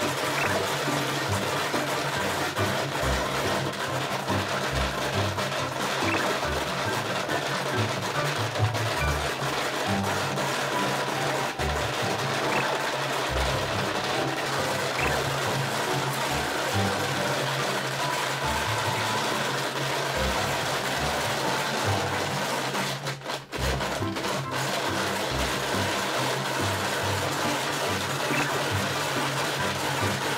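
Background music over the steady mechanical grinding of a hand-cranked shaved-ice machine shaving a block of ice, with a brief break about three-quarters of the way through.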